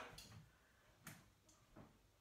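Near silence, broken by a few faint short clicks: one about a second in, a weaker one shortly after and another near the end.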